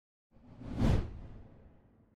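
A whoosh sound effect with a low rumble under it, swelling in from silence about a third of a second in, peaking near one second, then fading away. It is the transition effect of an animated end card.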